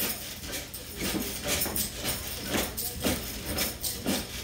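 A person bouncing steadily on a mini trampoline. Each bounce gives a short sharp sound, about two a second.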